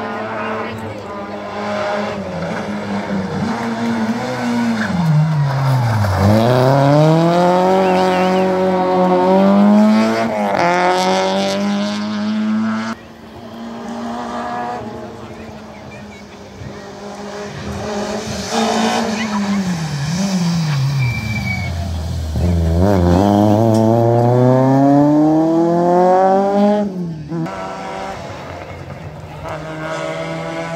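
A rally car's engine, out of sight, revving hard: twice the revs fall away steeply and then climb in long rising sweeps through the gears, broken briefly at each gear change.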